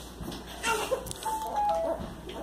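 A short electronic jingle of a few clear notes, stepping down in pitch in the second half, over faint voices.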